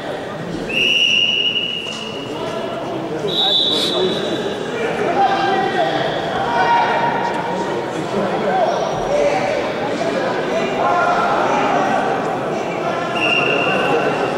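Men's voices shouting and calling in a large, echoing sports hall during ground grappling, with three short, high whistle blasts: two in the first few seconds and one just before the end, when the fighters are stood back up.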